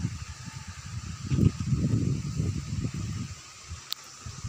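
Wind buffeting the phone's microphone in uneven gusts, with a sharp click just before the end.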